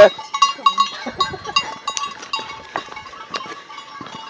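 Goats bleating, with a loud bleat right at the start. Repeated short ringing clinks follow through the rest.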